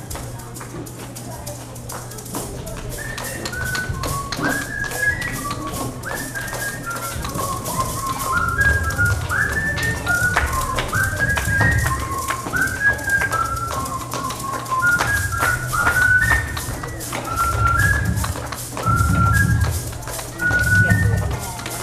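Maracas shaken in a fast, steady rhythm. About three seconds in, a man joins them whistling a traditional Colombian llanera melody in short gliding notes, with low thumps coming in during the second half.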